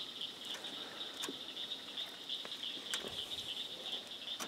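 Steady, high-pitched nighttime chorus of calling frogs and insects around a pond, with a few faint clicks from hands working along a trot line in a boat.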